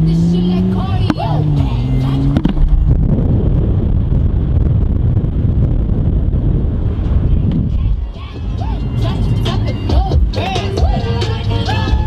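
BMW 135i's turbocharged 3.0-litre straight-six pulling hard, its pitch climbing twice as the revs rise through the gears. This gives way to a loud, steady rush of wind and road noise on the microphone.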